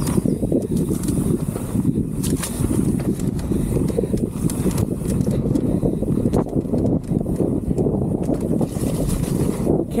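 Mountain bike descending a muddy dirt trail: steady wind rush on the microphone over the rumble of the tyres on the ground, with scattered knocks and rattles from the bike over bumps.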